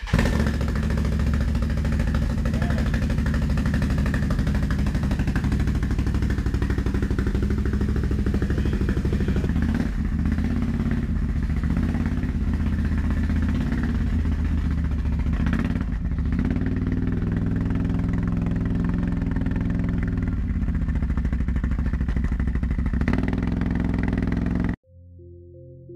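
ATV engine running steadily close to the microphone, with brief dips about ten and sixteen seconds in.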